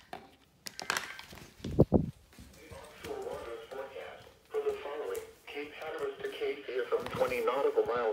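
Indistinct speech, with handling knocks and a low thump about two seconds in.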